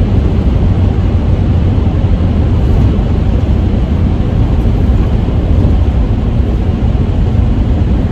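Steady engine and road noise inside the cab of a Ford E250 van cruising on the highway, mostly a low rumble.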